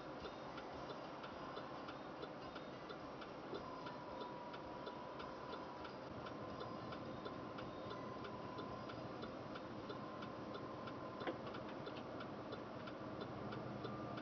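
A car's indicator flasher ticking steadily inside the cabin of the stopped car, about three clicks a second over a low engine-and-road hum. A faint steady high tone sounds from about four seconds in to about eleven.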